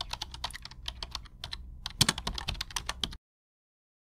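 Rapid, irregular clicking of computer-keyboard typing, a sound effect under animated title text. There is a short pause about a second and a half in and the loudest click comes about two seconds in. It stops suddenly a little after three seconds.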